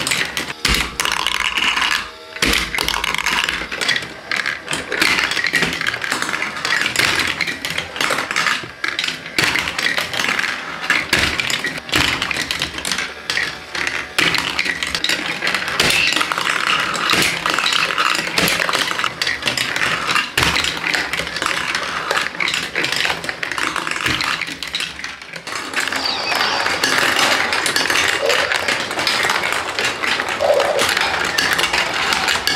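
Plastic marbles rolling and clattering through the plastic tracks, chutes and wheels of a VTech Marble Rush marble run: a continuous dense rattling and clicking, with the rattle changing character near the end.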